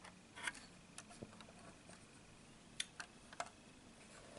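A handful of faint, scattered plastic clicks from LEGO bricks and parts being handled, over near silence.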